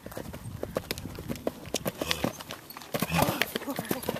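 A horse cantering over dry dirt and grass: a run of hoofbeats on hard ground that grows louder as the horse comes close, loudest about three seconds in.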